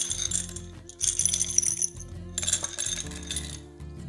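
Small pebbles poured from a glass bowl into a glass jar of larger stones, rattling and clinking against the glass in three pours. Background music with sustained low notes plays underneath.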